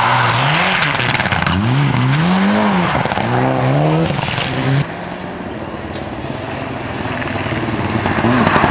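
A Mitsubishi Lancer Evolution rally car's turbocharged four-cylinder engine revving up and down sharply, about four times, as it is driven through corners on snow. About five seconds in, the sound drops to a quieter, steadier engine note.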